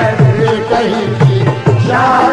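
Qawwali accompaniment between sung lines: tabla playing a steady beat, its bass strokes sliding in pitch, under held harmonium notes.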